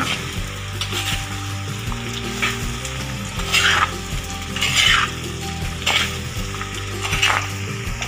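Sliced bitter gourd frying in a pan, with a steady sizzle and a spatula scraping and turning the slices about once a second.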